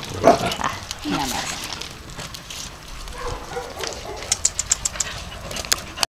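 Dogs making short vocal sounds mixed with people's voices, including one call that falls in pitch; near the end comes a quick run of sharp clicks.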